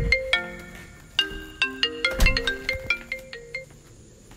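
Phone ringing with a marimba-style ringtone: a quick melody of struck mallet notes that stops shortly after the start, plays again from just over a second in, and ends near the end.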